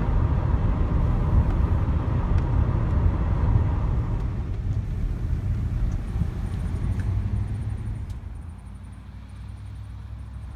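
Road and engine noise heard inside a moving van with the driver's window open, a steady rumble. It drops away over the last couple of seconds as the van slows.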